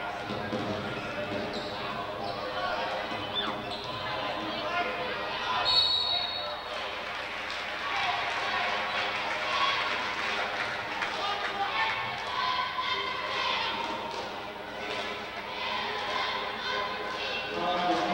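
Basketball game in a school gym: crowd voices and chatter with a ball being dribbled on the hardwood floor. A referee's whistle blows once, briefly, about six seconds in, stopping play before a free-throw lineup.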